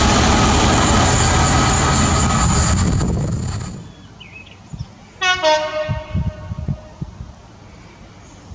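A loud steady din that stops abruptly almost four seconds in, followed about a second later by a train horn giving one blast of about a second and a half, dipping slightly in pitch at its start.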